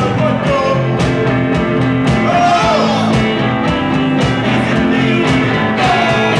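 Live rock band playing: a man singing over guitar and drums with a steady drumbeat.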